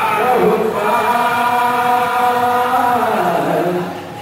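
Devotional kirtan chanting: one long sung line held nearly throughout, falling in pitch near the end.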